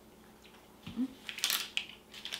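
A closed-mouth 'mm-hmm' of approval from someone tasting a banana-flavoured protein bar, followed by a quick run of sharp crackling clicks over the last second.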